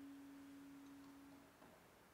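A faint, steady held single note from a saxophone and piano duo, dying away about a second and a half in.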